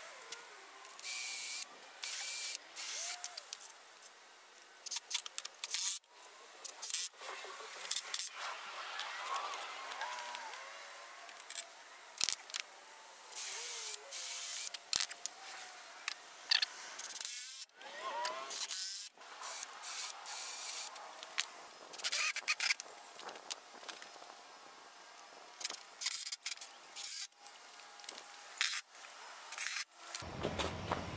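Cordless drill running in a series of short bursts, each about a second or less with pauses between, drilling pilot holes and driving screws into pine 2x4 framing.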